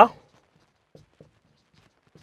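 A marker pen writing on a whiteboard: faint, short strokes, two of them about halfway through, just after a man's voice trails off at the start.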